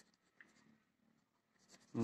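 Near silence with a faint, brief scratch of a pen writing on paper about half a second in.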